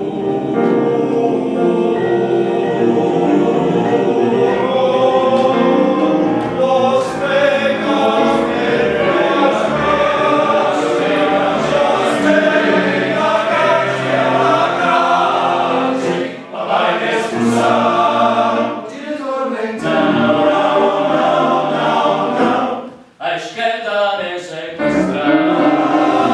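Men's choir singing in four-part male voicing (TTBB), holding and moving through sustained chords, with brief dips about two-thirds of the way through and a short break just before the end.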